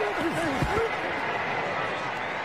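Steady stadium crowd noise in a televised football game, with a man's voice calling out briefly during the first second.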